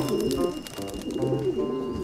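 Racing pigeons cooing in two warbling coo phrases, one at the start and another just after a second in.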